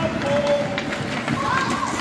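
Ice hockey play: skates scraping and carving on the ice with stick clicks, under drawn-out shouts from the bench and stands.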